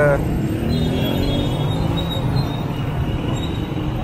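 Busy city street traffic close by: a steady rumble of motorcycle and car engines, with one engine note rising a little partway through.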